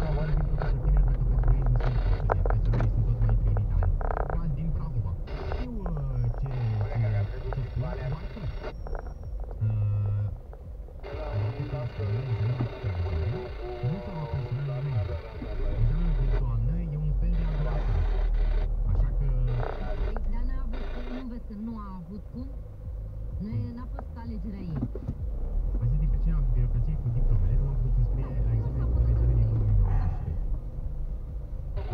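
Music with a singing voice from a car's radio, heard inside the cabin.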